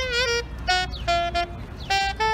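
Saxophone playing a melody live in short, separate notes. A bent, wavering note comes in the first half second, then quicker notes follow, over a steady low background rumble.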